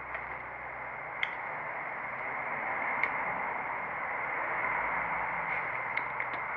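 Steady hiss of background noise, with a faint sharp click about a second in and another about three seconds in.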